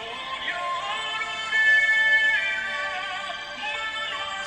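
A man singing a slow ballad in a high, female-range voice, holding a long high note in the middle.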